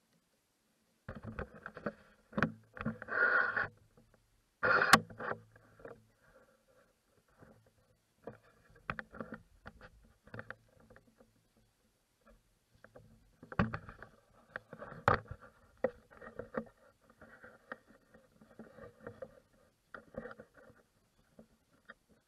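Footsteps crunching over a dry forest floor of pine needles and leaves, about one step every three-quarters of a second. A few louder rustles and knocks come in the first few seconds.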